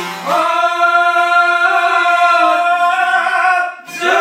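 A man's voice sings one long held note in a folk song, wavering slightly and breaking off just before the end. A bowed string line falls silent right at the start.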